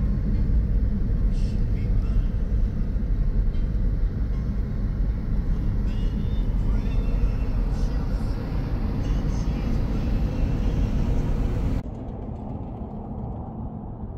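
Steady low rumble of a car being driven on the highway, road and engine noise heard from inside the cabin. It cuts off suddenly about twelve seconds in, giving way to a much quieter outdoor ambience.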